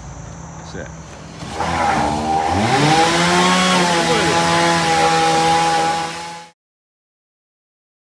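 Case skid steer's engine revving up: it gets loud about a second and a half in, its pitch rising and then holding high and steady, over crickets. The sound cuts off suddenly near the end.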